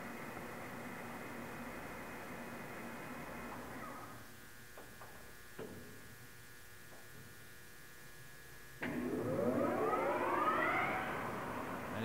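Victor 24120G engine lathe's geared headstock running at speed with a steady multi-tone whine. About four seconds in it winds down to a fainter hum, with a single click a little later. About nine seconds in the spindle starts up again, its whine rising in pitch for a couple of seconds as it comes up to a faster speed.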